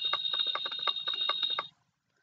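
Electronic sound effect from a talking reindeer toy's small speaker: a steady high tone over a fast, even run of clicks, cutting off shortly before the end.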